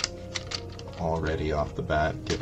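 Plastic building bricks clicking and clattering as brick plates are handled, with a few sharp clicks in the first half-second. A voice joins from about a second in.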